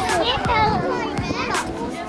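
Young children chattering and calling out as they play on playground equipment, several high-pitched voices overlapping, with two sharp knocks, one right at the start and one about a second and a half in.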